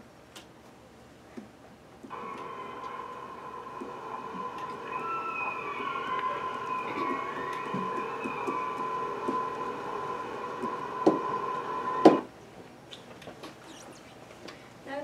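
Underwater recording of orca calls played through classroom loudspeakers: gliding, falling whistle-like pitches over steady tones. It starts suddenly about two seconds in and cuts off abruptly near the end, right after two sharp knocks.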